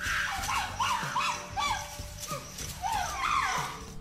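Primate calls from a chimpanzee and baboon squaring off: a run of short, rising-and-falling calls, two or three a second, with a brief pause about halfway.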